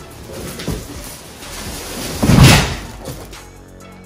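A single loud slam or thud about two and a half seconds in, with lighter knocking and handling noise before it.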